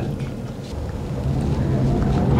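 Inside an Ora Funky Cat electric car pulling away from a stop: a steady low hum in the cabin grows louder from about half a second in, with a faint whine rising in pitch as the car gathers speed.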